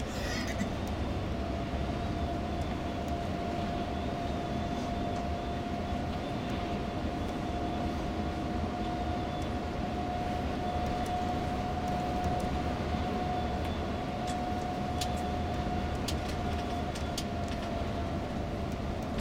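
Steady engine and road noise heard inside a moving tour coach, with a steady whine held throughout. A few light ticks or rattles come near the end.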